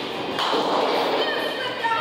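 Boys laughing hard, with a dull thud about half a second in, heard against the echoing noise of a bowling alley.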